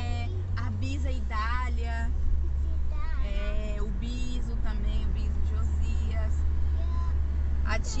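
Steady low road-and-engine rumble heard inside the cabin of a moving car, with voices talking over it in the first half and again near the end.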